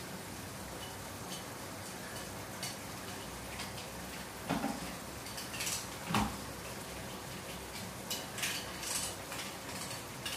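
Curry with eggs simmering in a wok over a gas flame, a steady low sizzle, with a few knocks and clinks of pots and kitchen utensils. The two loudest knocks come about four and a half and six seconds in.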